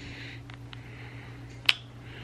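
A single sharp, very short click near the end, over a steady low hum, with two faint ticks about half a second in.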